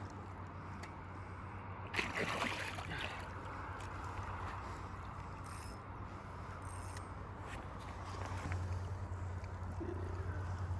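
Shallow river water sloshing and splashing around a steelhead held in the hands at the bank, the loudest splash about two seconds in, over a steady low rumble.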